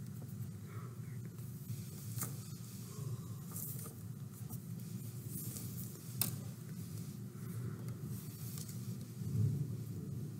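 Soft rustling of hands handling thread and feathers on a tabletop, with a couple of light clicks, the sharpest about six seconds in, over a steady low hum.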